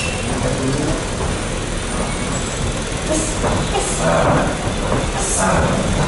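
Steady rumbling background noise, with a few short, indistinct voice or breath sounds in the second half.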